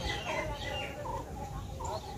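A bird calling over and over in a quick series of short, falling calls, a little under three a second.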